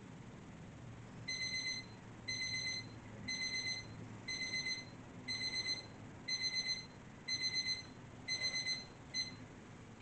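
Digital timer alarm beeping: short groups of rapid high-pitched beeps about once a second, with the last group cut short, marking the end of a timed exercise interval.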